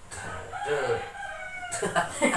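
A rooster crowing once: a single drawn-out call lasting a little over a second, starting about half a second in and falling slowly in pitch.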